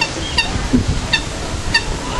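Common moorhen chicks peeping: three short high peeps, evenly spaced about two-thirds of a second apart.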